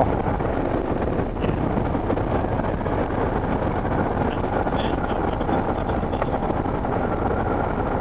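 Motorcycle engine running steadily at cruising speed, mixed with wind and tyre noise from riding on a gravel road, heard from a helmet-mounted camera.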